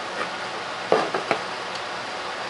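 Hands rummaging in a cardboard shipping box and lifting out a plastic-wrapped candy roll: a short cluster of rustles and clicks about a second in, over a steady hiss.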